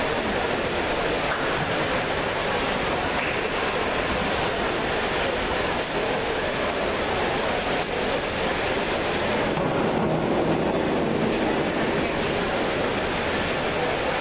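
Steady rushing hiss of water from the diving well's surface sprayers churning the pool surface, in an echoing indoor pool hall.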